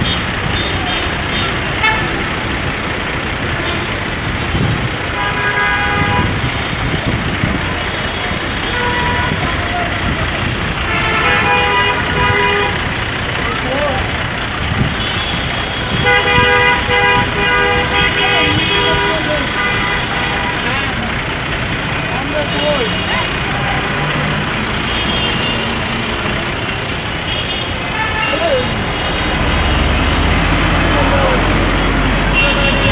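Busy road traffic at a city intersection: engines and road noise throughout, with vehicle horns honking repeatedly, the longest blasts lasting a few seconds around the middle.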